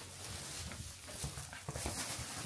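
Plastic bags rustling as they are handled and pushed under a bed, with a few soft knocks.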